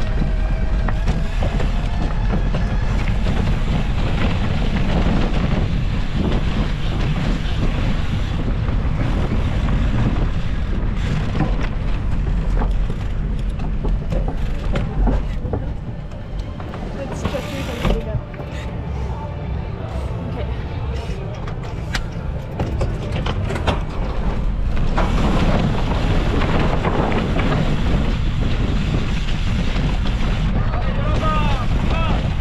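Wind rushing over the microphone and mountain-bike tyres rolling over dirt and rock, with the bike rattling, while riding fast down a cross-country course. About halfway through the noise drops for several seconds and a run of sharp clicks and knocks comes through.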